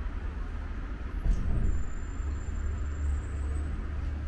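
A steady low rumble, swelling slightly about a second in.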